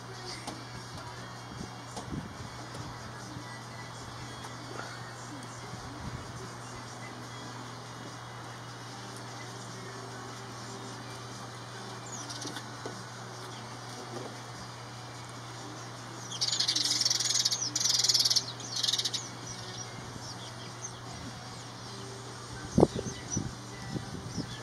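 House sparrow chirping: a loud run of quick, high-pitched chirps lasting about three seconds, past the middle, with fainter single calls elsewhere. A single sharp knock comes near the end.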